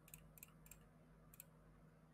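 Near silence with a few faint, sharp clicks, the last about one and a half seconds in.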